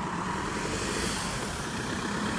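A car driving past on the road: a steady rush of tyre and engine noise that swells slightly toward the middle.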